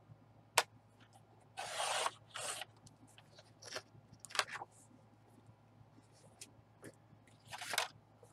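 Card stock sliding and rustling against a grooved scoring board as it is moved and repositioned: a sharp click about half a second in, then several short scraping rustles, the last just before the end.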